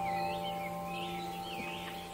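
Calm ambient background music: a held chord of chime-like tones slowly dies away while birds chirp over it in short rising and falling calls.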